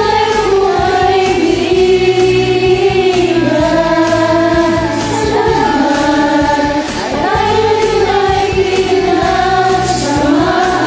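A group of amateur men and women singing together over a karaoke backing track, their separately recorded voices layered like a choir.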